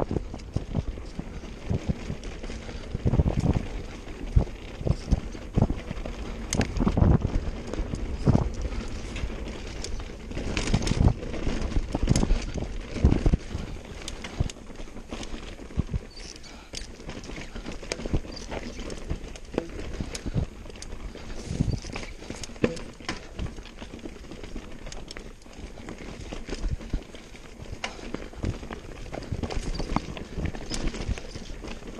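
Mountain bike rattling and knocking as it is ridden fast over a rough dirt trail, with the rumble of tyres on dirt. The knocks come thick and loud for the first half, then ease to a lighter clatter.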